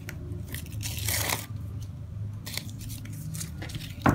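A foil-lined paper sticker packet being torn and crinkled by hand, with one longer rustling rip about a second in, then lighter rustles and small ticks as the stickers are slid out of it.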